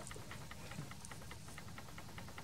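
Faint, fast, even ticking, about seven ticks a second, over a low background hum.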